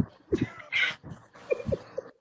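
Laughter in short, separate bursts, some of them breathy, from people on a video call.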